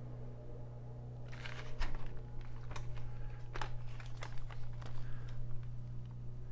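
Handling noise as a plastic RC monster truck chassis is turned over in the hands: scattered light clicks and rustles over a steady low hum.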